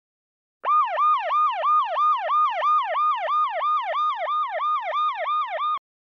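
Siren sound effect in a fast yelp: one pitched tone sweeping up quickly and falling back, about three times a second. It starts under a second in and cuts off abruptly near the end.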